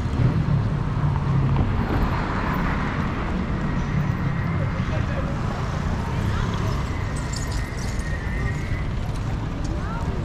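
City street ambience: a steady rumble of passing traffic mixed with the indistinct voices of passersby, with a faint thin squeal near the end.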